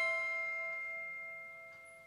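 Background music with bell-like mallet notes: its last struck chord rings out and slowly fades away.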